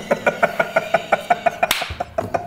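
Two men laughing hard, in a fast run of short rhythmic laughing pulses, with a brief sharp hiss-like burst of breath or noise near the end.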